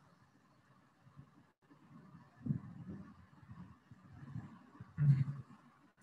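A pause with only faint low background noise and a few soft low sounds, the most distinct a brief one about five seconds in.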